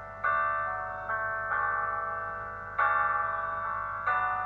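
Piano played alone: four chords struck in slow succession, each left to ring and fade.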